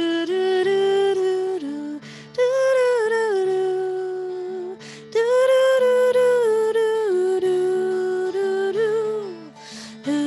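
A woman singing a wordless melody in long, smoothly gliding phrases, with short breaths between them, over held acoustic guitar chords.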